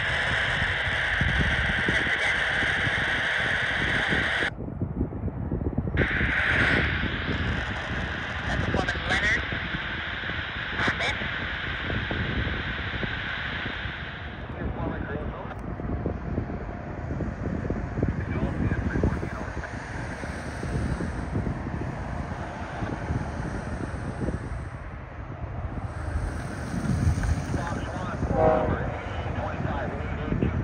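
Diesel-hauled intermodal freight train approaching on the main line, its locomotives giving a steady low rumble that grows as it nears. A steady high hiss runs through the first half, stops briefly about four seconds in and fades out about halfway through.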